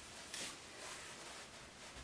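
Faint rustle of a fabric pillow sham being laid over padding and smoothed flat by hand, with one brief swish about a third of a second in.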